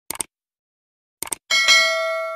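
Two short clicks, then a single bell-like ding about one and a half seconds in, ringing with several overtones and slowly fading away.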